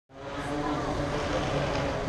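City street ambience: a steady background of traffic noise with faint passers-by's voices, fading in at the start.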